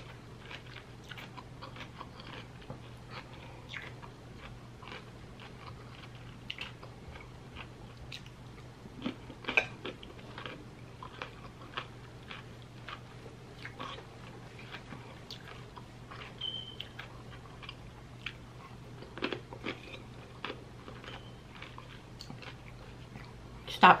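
Close-up chewing and crunching of raw cucumber slices seasoned with tajin: many small, crisp crunches, irregular throughout, over a faint steady low hum.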